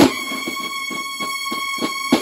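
Drum and bugle corps (a Mexican banda de guerra) playing: the horns hold one long high note over snare drums keeping a steady beat, about four or five strokes a second, after a loud accented hit at the start.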